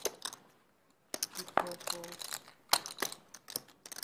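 A few light clicks and taps of poker chips and hands on the table, under faint murmured voices.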